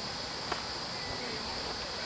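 Insects droning steadily outdoors in a continuous high-pitched buzz, with a faint tick about half a second in.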